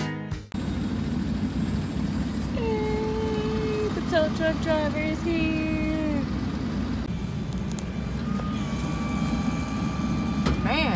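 A vehicle engine idles with a steady low rumble, heard from inside a van's cab. Guitar music cuts off about half a second in, and a voice is heard faintly for a few seconds near the middle.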